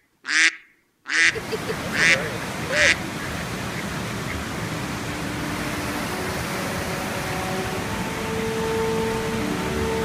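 Mallard ducks quacking: four loud, short quacks in the first three seconds. Then a steady background hiss, with soft held notes of orchestral music coming in from about halfway.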